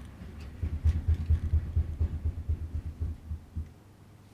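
Desk microphone being handled or bumped: a quick run of low thumps and rumble, several a second, that starts about half a second in and stops just before the end.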